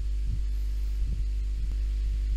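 Steady low electrical hum running under a pause in the talk, with a few faint soft thumps.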